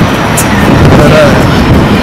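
Loud, steady city street noise from passing road traffic, with indistinct voices mixed in.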